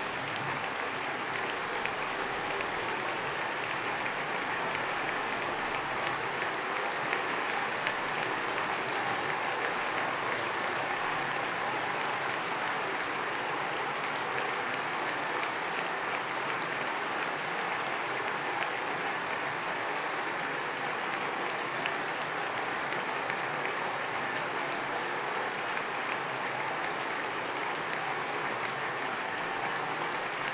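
Sustained applause from a large assembly of parliamentarians, many hands clapping together at a steady level.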